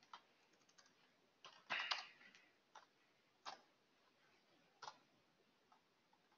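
Faint, scattered computer keyboard keystrokes as a shell command is typed: a few isolated clicks, with a short flurry about two seconds in.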